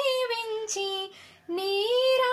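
A high solo voice singing a Telugu devotional harathi song, unaccompanied; the sung line ends about a second in and the singing resumes after a short pause.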